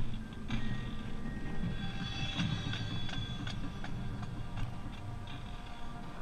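Marching brass rehearsal heard through a body-worn camera's microphone while the player is not playing: wind rumble and running footfalls on the turf, a faint regular ticking, and distant brass holding a few notes about two to three seconds in.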